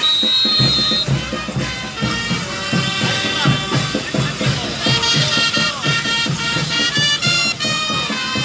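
A band playing saqra dance music: melodic wind-instrument lines over a steady low beat of about two pulses a second.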